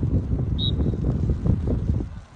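Wind buffeting the microphone, a gusty low rumble throughout, with one brief high-pitched tone about half a second in.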